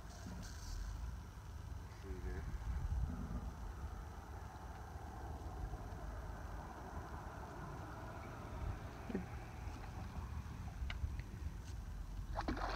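Outdoor riverbank ambience: low wind rumble on the microphone under a steady, even hiss, with a couple of faint clicks near the end.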